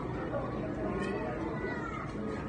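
Indistinct voices and chatter, with a high, gliding cry about a second in.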